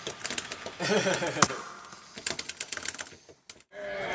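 Rapid, irregular clicking and tapping, with a short burst of voice about a second in; the clicks thin out and stop shortly before the end.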